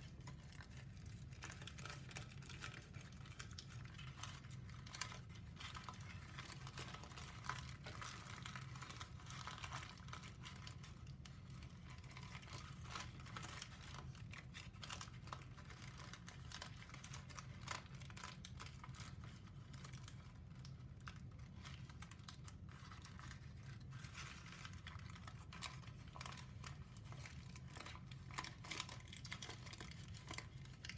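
Faint rustling and crinkling of a pleated sheet of brown paper being folded and collapsed by hand, with many small irregular crackles throughout, over a low steady hum.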